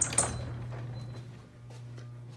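Two sharp clicks right at the start, then a steady low electrical hum in a basement corridor.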